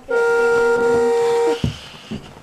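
Electronic tune from a children's ride-on toy car: a flat, held note with a lower note under it, lasting about a second and a half before it cuts off, followed by a short thump.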